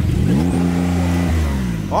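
Porsche 911 Carrera (992) twin-turbo flat-six revved once in neutral. The revs climb quickly, hold at a steady pitch for about a second where the engine's neutral rev limit caps them, then drop back to idle.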